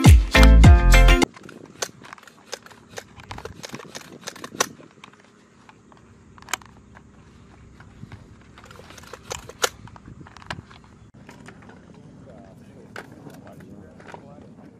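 Music with a heavy beat stops abruptly about a second in. After it, rifle cartridges are pressed one at a time into a magazine from a cardboard ammunition box: a string of short, irregular clicks and clinks of brass on metal.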